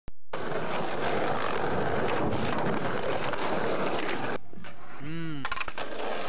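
Skateboard wheels rolling on pavement, a steady rough rushing noise that cuts off suddenly about four seconds in. About a second later comes one short call from a person's voice, rising and then falling in pitch.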